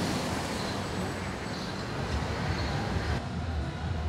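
Steady city street noise, a low rumble under an even hiss.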